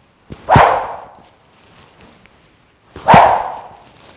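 Two swings of a rubber stretch-band 'rope' on a golf grip (Power Impact Pro 2.0) whooshing through the air, about two and a half seconds apart. Each whoosh starts with a short low thud.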